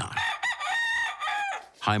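A rooster crowing once, a single cock-a-doodle-doo about a second and a half long.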